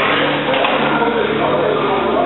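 Indistinct voices talking, with steady background music beneath.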